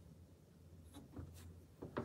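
Chalk writing on a chalkboard, faint: near silence for about a second, then a few short scratchy strokes that come quicker near the end.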